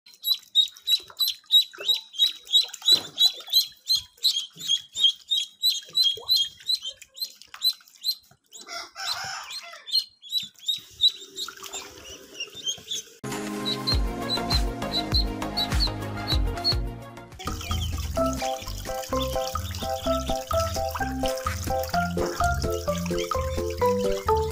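Ducklings peeping, a rapid run of high chirps, for about the first eight seconds. Background music with a steady beat comes in a little past halfway.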